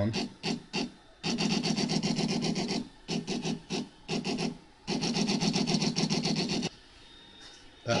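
X-Carve CNC router's stepper motors jogging the carriage and bit down under keyboard control, a steady electric buzz that comes in separate moves. There are a few short taps, then a run of about a second and a half, more short taps, then a longer run of almost two seconds that stops about a second before the end.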